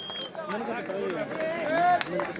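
A man's voice calling out over an outdoor crowd's background chatter, with a brief high steady tone right at the start.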